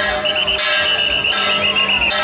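Taiwanese temple procession music: a shrill suona (double-reed horn) playing a wavering high melody over cymbals and gongs crashing about every three-quarters of a second.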